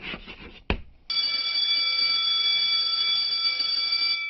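Chalk scratching on a blackboard in a few short strokes, then about a second in an electric school bell starts ringing steadily, loud and continuous for about three seconds.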